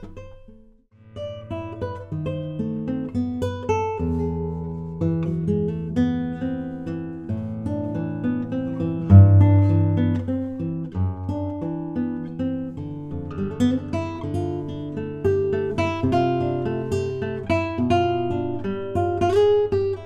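Handmade classical guitar with a solid Caucasian spruce top and solid American walnut back and sides, played solo: a fingerpicked piece with a melody over ringing bass notes. It begins about a second in, and the heaviest bass note comes about nine seconds in.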